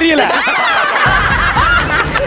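A group of people laughing, over background music.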